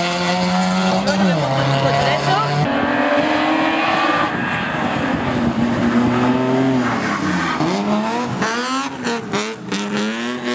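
Rally car engines revving hard through gear changes, first a blue rally hatchback and then a yellow BMW E30 3 Series hillclimb car, whose revs dip and climb again as it brakes and downshifts for a hairpin. A cluster of sharp cracks comes near the end.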